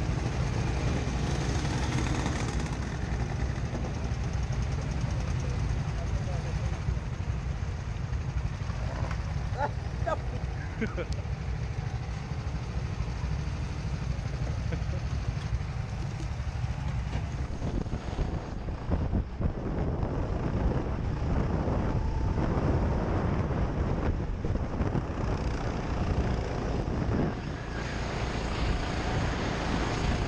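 Rental go-kart engines idling in a row, a steady low rumble, with people's voices over it. Past the middle the engine sound grows louder and rougher as the kart pulls away onto the track.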